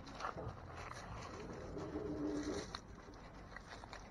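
Quiet outdoor background with one low, steady cooing call lasting about a second, starting near the middle, and a light click just after it.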